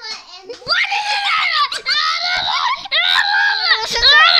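A young girl screaming loudly in a high pitch, starting about a second in and coming in three long stretches with short breaks.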